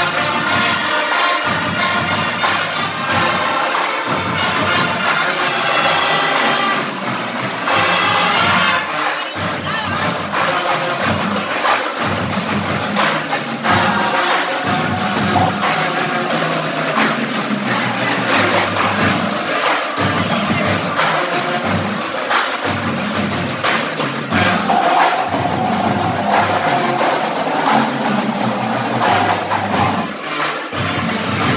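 Live marching band playing, brass and drums: sustained brass chords at first, then from about nine seconds in a fast, dense run of drum and percussion hits under the horns.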